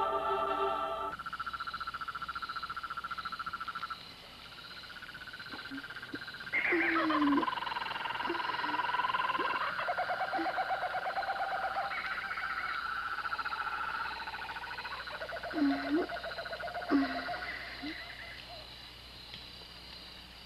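Night-forest sound effects: steady, rapidly pulsing trills of calling animals, with owl hoots over them, including a long falling call and a few short low hoots near the end. Music cuts off about a second in.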